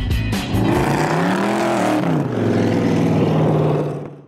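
Rock outro music breaks off about half a second in. A car engine then revs up and drops back, and holds a steady note that begins to fade right at the end.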